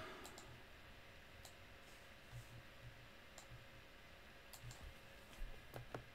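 A few faint, sharp clicks scattered a second or so apart over near silence, from someone working a computer or phone.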